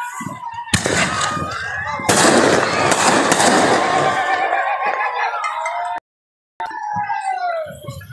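Fireworks going off: two sharp bangs about a second in, then about three seconds of dense crackling and popping, with voices over it. The sound drops out completely for about half a second near the end.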